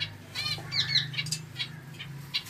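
Small caged finches giving a few short, high chirps, mostly in the first half, with a few brief rustles, over a low steady hum.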